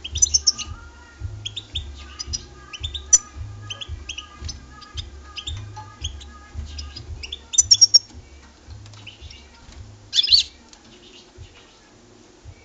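European goldfinch twittering and chirping in short, rapid bursts, loudest just after the start, around eight seconds in and near the end. A low pulsing hum runs underneath.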